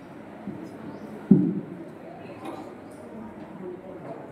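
A single dull thump about a second in, from a wired stage microphone being handled as it changes hands, over faint hall noise.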